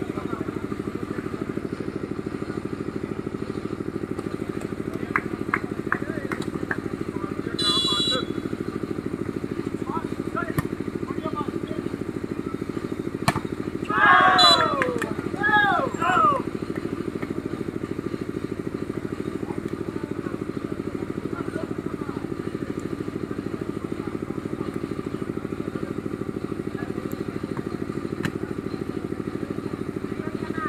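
A steady, low engine-like drone runs at an even level throughout. Brief shouting voices rise above it about halfway through, with a short high-pitched sound a few seconds before.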